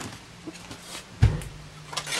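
Plastic model kit parts set down on a table: a few light knocks and one dull thump about a second in.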